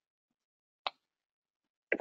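Near silence with a single short, sharp click a little under a second in.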